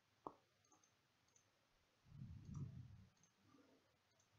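Near silence, with a single faint computer-mouse click about a quarter second in and a faint low murmur around the middle.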